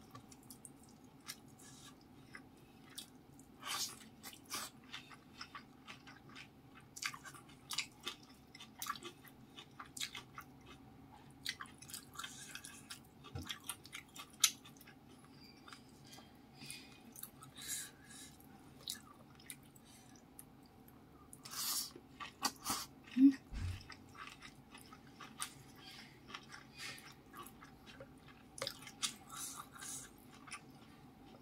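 Close-miked eating sounds: wet chewing and mouth smacks of rice, fish and stir-fried greens, mixed with soft squishes of fingers working the food on the plate. The sounds come as irregular short clicks and smacks, with a louder burst about three-quarters of the way through.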